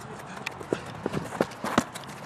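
A quick, irregular run of knocks: football players' boots thudding on artificial turf as they run and challenge close by.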